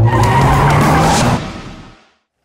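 Loud, skid-like rushing noise over a low steady hum, fading out over the last half second.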